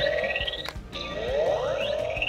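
Electronic activation sound from a toy Batman voice-changer cowl: a rising sweep ends, then a short beep about a second in and another rising sweep.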